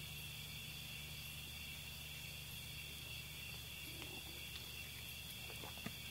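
Faint, steady high chorus of crickets over a low background hum.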